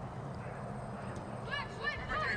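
Distant voices of players calling out across a soccer field, short rising-and-falling shouts starting about a second and a half in, over a steady low outdoor hum.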